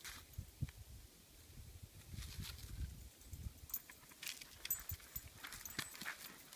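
Footsteps on a woodland trail: scattered soft crunches of leaves and gravel underfoot, over a low rumble from the camera moving.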